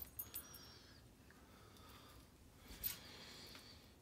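Near silence with a few faint metallic clicks as a lock pick and a padlock are handled: a couple near the start and one more about three seconds in.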